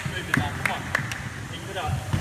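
Echoing sports hall: trainers squeaking and feet thudding on the wooden floor, with sharp clicks and squeaks every few tenths of a second, under indistinct voices.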